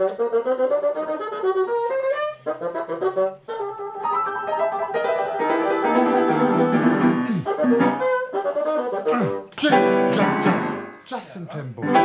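Bassoon playing with piano accompaniment. The music breaks off briefly a few times.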